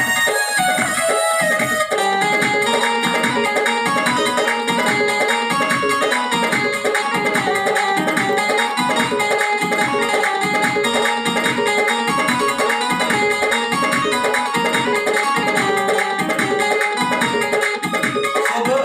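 Instrumental interlude of a bhajan played on an electronic keyboard: a melody over a steady drum rhythm, the arrangement changing about two seconds in.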